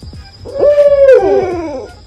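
Two dogs howling. One long howl holds a steady note and then falls away, and a second howl joins about a second in and slides down beneath it.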